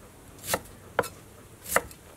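Large kitchen knife slicing through red shallots and striking a wooden cutting board, three cuts in quick succession.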